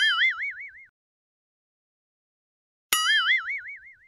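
A cartoon 'boing' sound effect, a springy twang whose pitch wobbles up and down and dies away within about a second. It is heard twice: once at the start and again about three seconds in.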